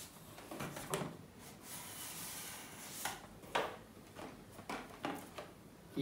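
Cardboard earbuds box being slid open, the inner box drawn out of its printed sleeve, with soft scraping of card on card and a few light knocks as it is handled.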